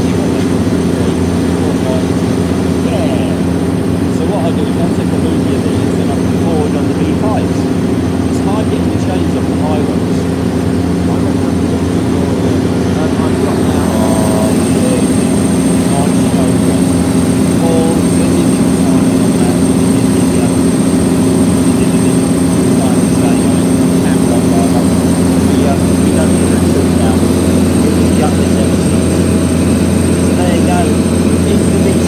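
Heavy vehicle engine running at a steady drone, getting a little louder about halfway through.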